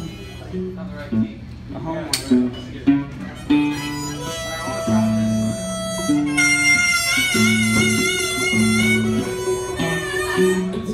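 Live country band instrumental break: electric and acoustic guitars playing chords while a harmonica plays over them, holding a long wavering note in the second half.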